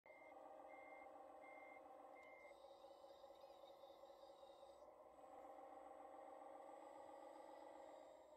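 Remote-control hydraulic wheel loader running with a steady hum. Its sound module gives four evenly spaced reversing beeps in the first two and a half seconds. Then a higher whine runs for about two seconds as the hydraulics raise the loaded forks.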